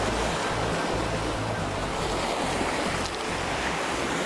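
Sea surf washing over shoreline rocks, a steady rush of water, with some wind on the microphone.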